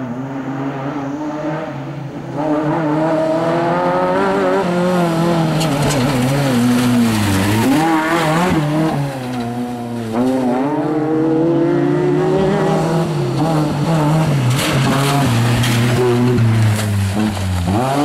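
Rally-prepared Maruti Gypsy's engine revving hard as it is driven flat out on a loose dirt stage. The pitch climbs and drops through several gear changes, with tyres scrabbling on gravel. It gets louder about two seconds in as the car comes close.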